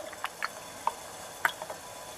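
Small water splashes and light clicks in a glass bowl as a softened plastic accordion tube is held down in cold water to set its shortened length. There are a few scattered, faint ticks, a little over a second in and again just after.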